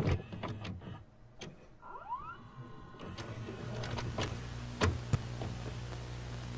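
Videocassette player mechanism clicking and whirring as it goes into playback: a short rising whine about two seconds in, then a steady low motor hum with two sharp clicks near the end.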